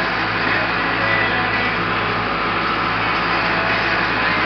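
A vehicle running steadily while hauling a load of hay bales: a constant engine hum under even road and running noise, with no change in speed.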